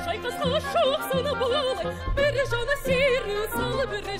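Operatic singer with symphony orchestra: a high sung line with wide vibrato and quick ornamental turns over pulsing low orchestral chords.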